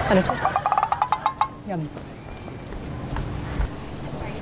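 Steady high chirring of crickets in a night-time chorus. In the first second and a half it is joined by a quick run of about a dozen short pitched pips.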